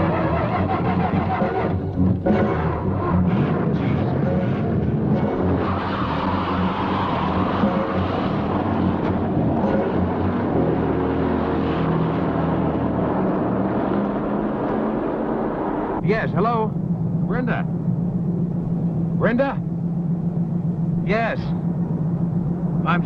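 A car's engine running steadily while driving, with background music from the film score over it.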